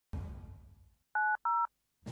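A low sound fades out over the first second, then two short telephone keypad (DTMF) tones sound in quick succession, each a pair of steady tones pressed together, matching the 9 and 0 keys.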